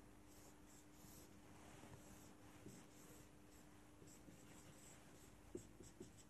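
Faint scratching strokes of a marker drawing on a whiteboard, over a faint steady hum.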